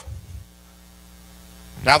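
Low, steady electrical mains hum from the sound system: a buzz made of a stack of even overtones that holds level throughout.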